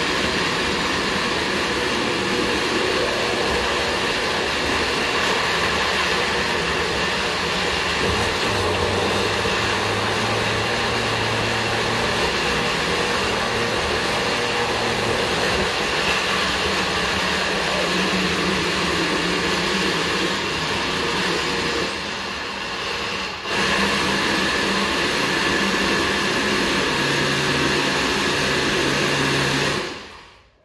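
Countertop blender motor running steadily, puréeing a thick mash of scotch bonnet peppers, mango and garlic. The sound dips briefly about three-quarters of the way through, then runs on and stops at the end.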